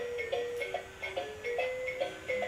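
Hap-P-Kid preschool learning robot toy playing its dance tune: a simple electronic melody of short notes.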